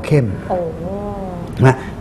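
Speech only: a voice draws out one word in a long wavering tone, then says a short word near the end.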